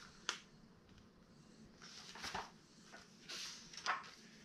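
A sharp click about a third of a second in, then a few soft rustling swishes as a hardcover picture book is lowered onto a lap and its page is turned.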